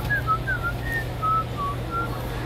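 A person whistling a quick run of short notes, some sliding down in pitch, over a steady low hum.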